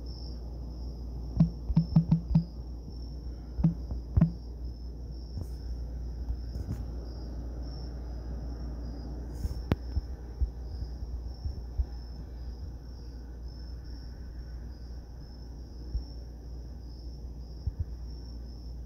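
A steady, high-pitched, insect-like trill over a low hum. A quick run of light taps in the first few seconds, fingers typing on the phone's touchscreen.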